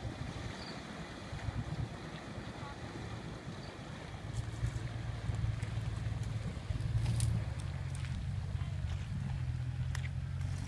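Full-size SUV engine running as it wades through river water up to its wheels, heard from a distance with wind buffeting the microphone; the engine's low hum grows louder about halfway through as it works toward the bank.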